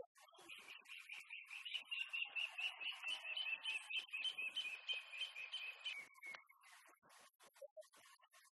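A bird singing a fast run of repeated high chirps that stops about six seconds in, over faint outdoor background noise.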